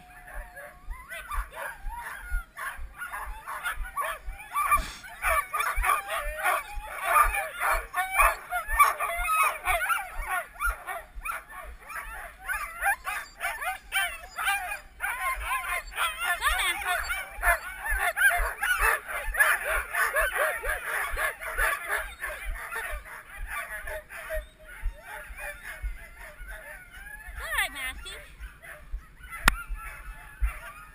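A team of Siberian huskies yelping and barking together in a dense, continuous clamour. This is the excited din of sled dogs at hookup, eager to run. It eases a little after about 24 s and flares again briefly near the end.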